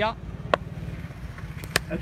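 Sharp crack of a cricket bat striking a tape ball, near the end and just after a lighter knock, over faint outdoor background noise. A single sharp click comes about half a second in.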